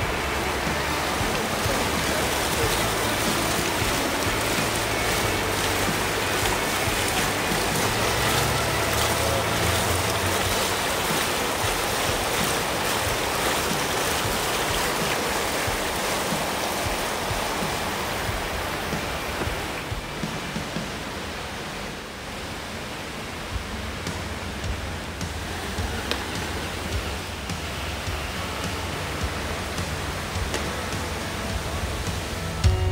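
Fountain jets splashing into a shallow pool: a steady rush of falling water that grows fainter about two-thirds of the way through.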